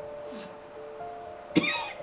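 Soft background music holding long steady notes, then about one and a half seconds in a woman coughs suddenly and harshly.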